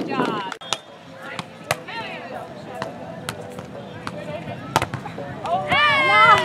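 Beach volleyball players' voices calling out, loudest near the end, with a few sharp, separate slaps scattered through.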